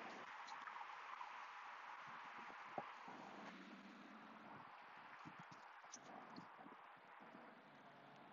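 Near silence: faint outdoor background hiss with a few soft ticks.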